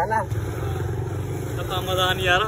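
A motorcycle passing close by in street traffic, its engine running with a steady low drone.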